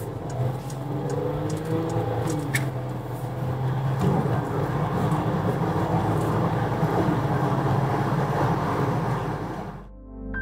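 Inside the cabin of a Citroën C6 2.7 V6 diesel on the move: a steady engine hum with tyre and road noise. The noise grows louder about four seconds in as the car gathers speed, then fades out near the end.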